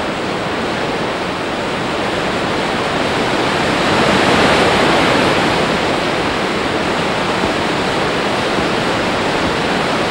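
Film sound effect of rushing wind, an even hiss that swells about four seconds in and then eases back.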